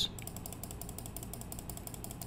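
Faint, rapid, even run of small mechanical clicks from a computer mouse's scroll wheel being turned.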